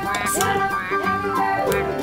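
Background music: a melody with swooping notes over steady low bass notes.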